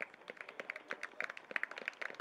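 Scattered hand clapping from a small group of people, quick irregular claps, with voices talking in the background.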